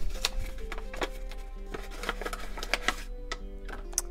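Kraft paper envelope being handled and opened, a sticker seal peeled off its flap: a run of short paper rustles and clicks, over soft background music.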